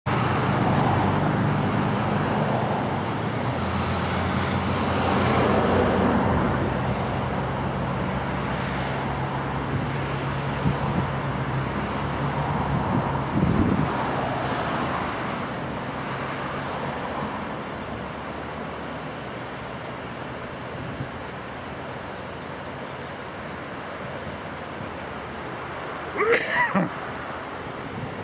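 Steady engine rumble over a wash of outdoor noise. The low hum fades out about halfway through, leaving a quieter even noise.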